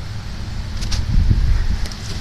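Low rumble of wind and handling noise on a phone's microphone, swelling about a second in, with a couple of faint ticks.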